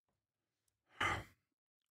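A man's single short sigh, one breath out about a second in.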